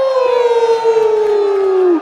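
A man's long, held yell through a microphone, a high drawn-out vowel that slides slowly down in pitch and breaks off just before the end.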